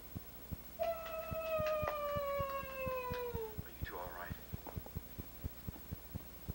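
A long drawn-out vocal call that glides slowly down in pitch, followed about a second later by a short wavering call, over a steady fast ticking of about four clicks a second.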